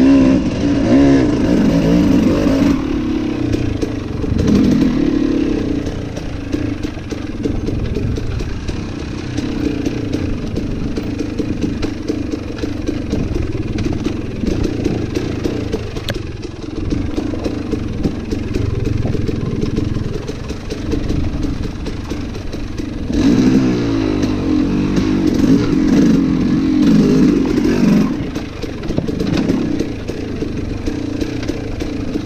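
Dirt bike engine under way on rough singletrack, revs rising and falling in quick surges for the first few seconds and again for about five seconds near the end, running lower and steadier in between.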